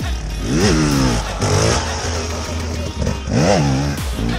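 Dirt bike engine revving, its pitch rising sharply and dropping back twice: once about half a second in and again near the end.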